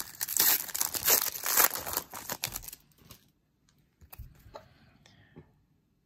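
Foil wrapper of a hockey card pack being torn open and crinkled by hand, a dense run of crackles for about three seconds. After that come only a few faint ticks as the cards are handled.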